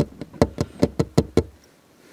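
A quick run of about eight sharp knocks, roughly five a second, stopping about a second and a half in.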